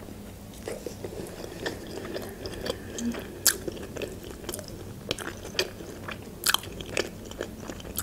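Close-miked chewing of a bite of pepperoni pizza: soft crunches of crust and wet mouth clicks, scattered and uneven, with two sharper crunches around the middle and near the end.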